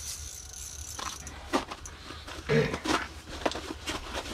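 Spinning reel being cranked and the rod and line handled as a fish is brought up through the ice hole, with short rattles and clicks, over a low steady hum.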